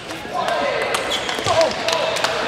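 Plastic table tennis ball clicking in a rally, struck by the bats and bouncing on the table in quick, irregular succession. Short gliding squeals sound in the first half and again about one and a half seconds in.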